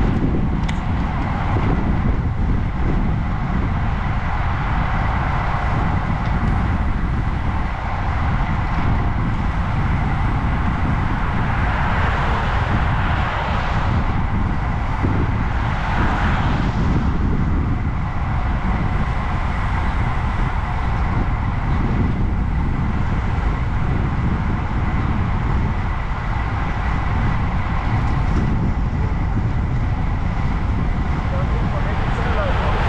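Steady wind buffeting on a GoPro microphone while cycling along a road, a constant low rumble and rush. A car passes in the opposite lane about halfway through.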